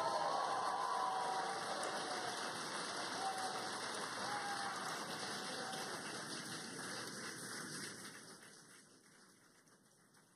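Applause from a room of people celebrating the capsule's splashdown, with a few faint cheers at the start. It dies away over the last two seconds.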